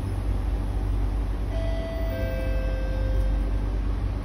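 MRT door-closing chime: two ringing notes, the higher then the lower, overlapping for about two seconds, over the steady low hum of the stopped train.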